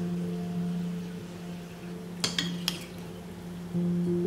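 Background music with held notes, and about halfway through a quick cluster of sharp metallic clinks from a wire-mesh skimmer knocking against cookware as peppers are lifted out.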